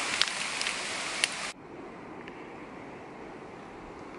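Steady hiss of forest ambience with a few faint clicks, which cuts off suddenly about a second and a half in to a quieter, duller background noise.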